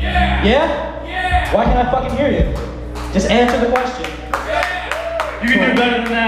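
Voices shouting and talking in a club between songs, with a few hand claps about halfway through and a steady low hum from the stage amplifiers.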